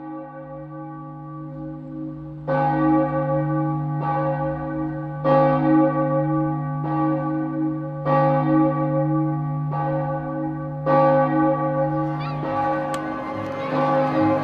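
Church bells ringing: a stroke about every second and a half, each ringing on over a steady low hum that carries between strokes.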